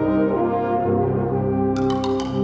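Fanfare band playing held brass chords, flugelhorns and euphoniums among them. A few sharp percussion strikes ring out near the end.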